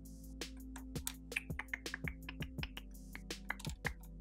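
Soft background music with sustained tones, over light, irregular clicking and tapping of small laser-cut wooden puzzle pieces being pushed against each other and into their wooden frame.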